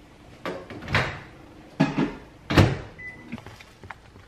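Microwave door and a plastic tub being handled: four knocks and thuds spread over about two seconds, then a short electronic beep about three seconds in.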